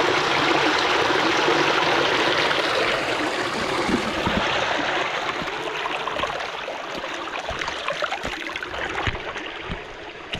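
Water rushing and splashing over rocks in a small stream cascade, loudest at first and easing off gradually over the last few seconds.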